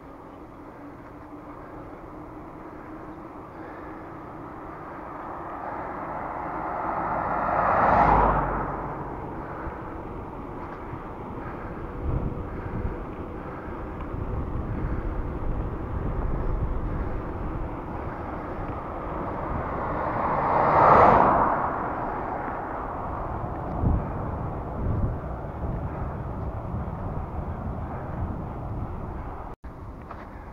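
Wind rushing over the microphone of a camera on a moving bicycle, with low buffeting. Two vehicles pass on the road, each swelling up and fading away over a couple of seconds, about a quarter of the way in and again about two-thirds of the way in.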